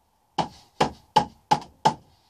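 A hand patting down on the pages of an open book lying on a painting board: five quick, evenly spaced slaps, about three a second.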